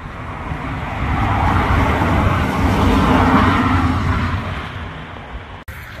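A road vehicle passing by, its noise swelling over about two seconds and then fading away.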